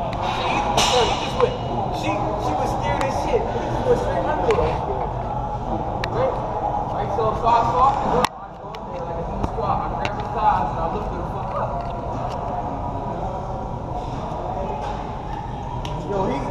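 Busy gym ambience: voices talking in the background, with occasional short, sharp knocks. The sound cuts off abruptly and drops about eight seconds in.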